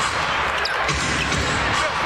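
A basketball being dribbled on an arena court, low thuds over steady crowd noise in a large hall.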